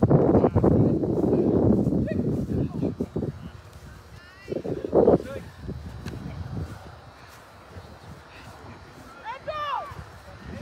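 Outdoor playing-field sound: distant shouts and calls from players, with a louder rumbling noise through the first few seconds that then dies down.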